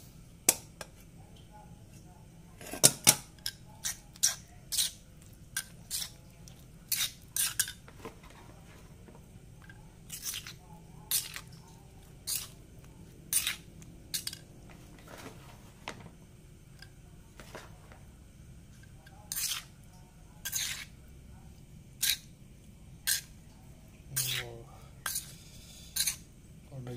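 A metal spoon stirring tempeh cubes in marinade inside a stone mortar, with irregular sharp clinks and scrapes of metal on stone about once a second.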